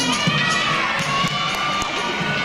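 Crowd cheering and shouting in high voices, many at once, over floor-routine music with a steady beat.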